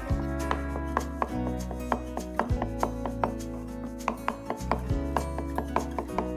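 Large kitchen knife chopping soft mozzarella on a wooden cutting board: quick, irregular knocks of the blade hitting the board, about three or four a second, over background music.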